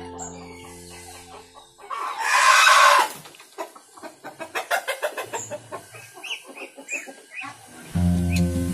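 Village chickens (ayam kampung): a rooster gives a short, loud crow about two seconds in, followed by clucking and short chirps from the flock.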